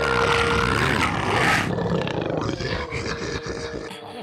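A cartoon sharptooth, a Tyrannosaurus-like dinosaur, roaring: a loud, rough roar that weakens after about two seconds.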